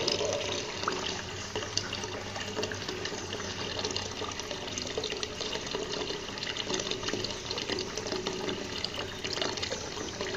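A stream of water pouring from a PVC pipe into a small fish pond, splashing steadily on the surface.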